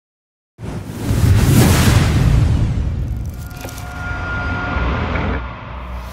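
Cinematic logo-intro sound effect: a sudden deep boom with a whoosh about half a second in, trailing into a long low rumble with a faint held tone, swelling again near the end.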